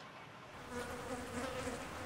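Flies buzzing: a faint, wavering hum that grows louder about two-thirds of a second in.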